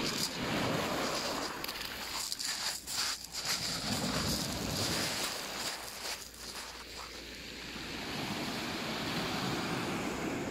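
Small waves of surf washing in and out over a shingle beach, a steady hiss of breaking foam over pebbles. The wash eases about six seconds in and builds again near the end.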